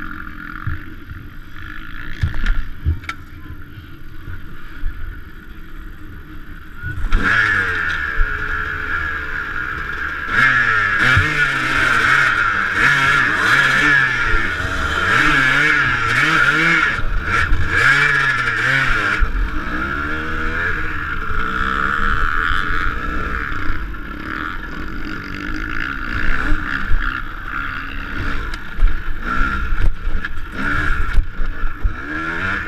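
Dirt bike engine heard from the rider's helmet: low and quiet with a few knocks at first, then revved hard again and again from about seven seconds in as the bike climbs over a tyre obstacle, and running steadier near the end.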